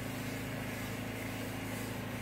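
Lawn mower engine running steadily outside, a low, even hum at one pitch.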